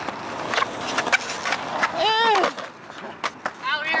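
Skateboard wheels rolling on concrete with several sharp clacks of the board in the first two seconds, then a man laughing about two seconds in.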